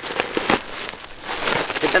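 Plastic bag wrapping crinkling and rustling in irregular crackles as it is pulled open by hand, with a sharper crackle about half a second in.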